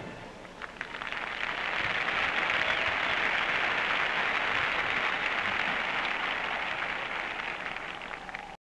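Large stadium crowd applauding after a marching band's number ends, swelling over the first two seconds and then slowly tailing off.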